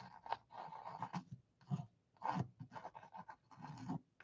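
Mechanical pencil sketching on a stretched canvas: faint, short scratching strokes in an irregular run.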